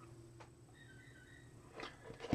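Near silence: room tone, with a faint click and a soft brief rustle near the end.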